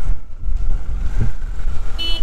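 A Bajaj Dominar 400 motorcycle on the move, heard as a heavy low rumble of engine and wind buffeting the rider's microphone.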